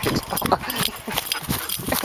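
Dogs playing rough at close range: a quick, uneven run of scuffling knocks and thuds from paws and bodies, with short animal vocal sounds in between.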